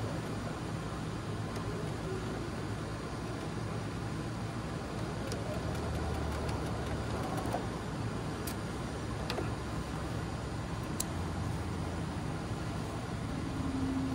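Electric sewing machine running steadily as it stitches a seam along the curved edge of a pocket bag, with a few faint clicks.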